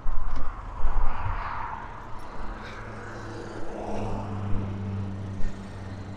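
Low rumble and bumps of wind and handling on the microphone outdoors, then a steady low hum of a motor vehicle's engine running from about two and a half seconds in.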